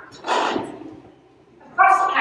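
A short, rough vocal burst close to a microphone, without a clear pitch, then a woman's voice starting to speak near the end.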